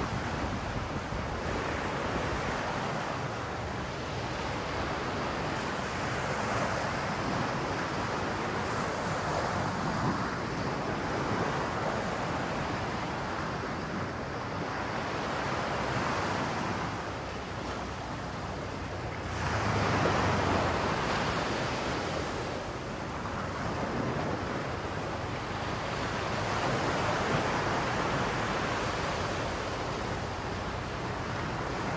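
Sea surf washing in a steady rush that swells and eases every few seconds, loudest about two-thirds of the way through.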